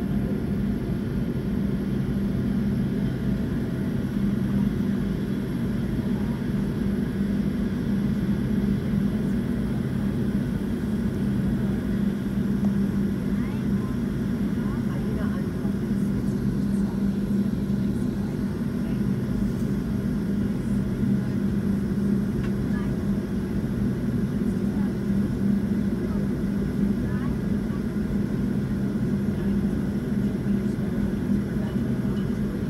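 Steady low hum inside the cabin of a Boeing 757-200 taxiing after landing, its engines running at idle.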